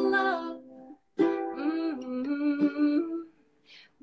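A woman singing a gentle song to her own ukulele; one phrase fades out about a second in, and after a short pause she sings the next line, with a breath just before the following phrase near the end.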